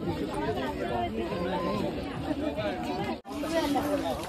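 Several people talking at once: crowd chatter of pilgrims walking close by, cutting out briefly about three seconds in.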